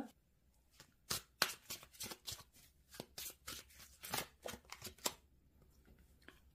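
Faint shuffling of a large double deck of tarot cards by hand: a run of irregular soft card flicks and slaps for about four seconds, stopping just before one card is drawn out.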